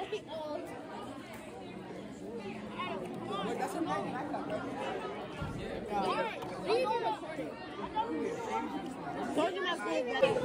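Indistinct chatter of several teenagers' voices in a large hall, with no clear words.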